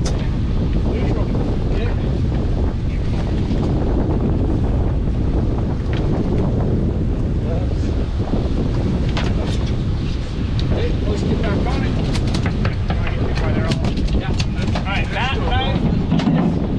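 Wind buffeting the microphone over the steady rumble of a fishing boat running at sea, with scattered short knocks and clatter.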